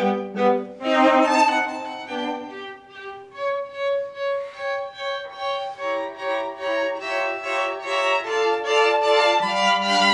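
String quartet playing bowed chords. The texture thins early on to a softer stretch of one repeated note, then fills out again into fuller, louder chords.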